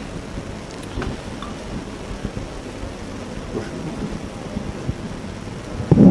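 Steady rumbling, hissy background noise with a few faint clicks, in a pause between a man's words.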